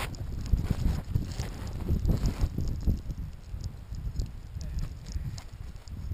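Wind buffeting the microphone as a low, uneven rumble, with scattered light clicks close by.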